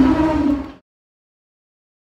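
A woman's voice and the hubbub around it fade out within the first second, followed by dead silence for the rest.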